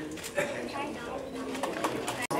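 Indistinct, low talk from people standing close by, in a small crowd at an indoor event.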